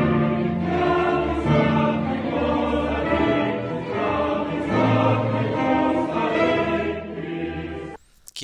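Live orchestra with strings playing slow, sustained chords that change every second or so, cutting off abruptly at the end.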